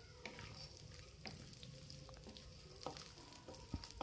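Chopped almonds and cashews frying gently in ghee in a kadai: a faint sizzle, with a few light taps and scrapes of a wooden spatula stirring the nuts.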